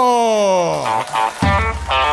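A man's long, drawn-out announcing shout sliding down in pitch, then after a short gap stage music with a pulsing bass and guitar kicks in about one and a half seconds in.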